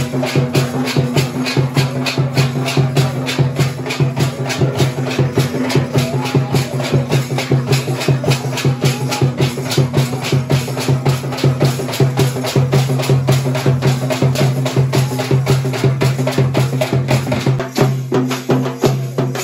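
Folk percussion ensemble of drums and small hand cymbals playing a loud, fast, even beat of about five or six strokes a second over a steady low drone.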